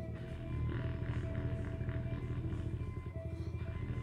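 Free-improvised duo of contrabass clarinet and bowed cello: a low, buzzing note with a fast rattle, while short higher tones come and go.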